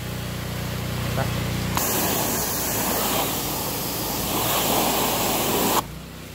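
A pressure washer's engine running steadily; about two seconds in, a hissing spray of water starts and runs for about four seconds, then cuts off abruptly.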